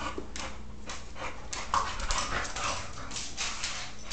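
A boxer dog panting, short noisy breaths coming a few times a second.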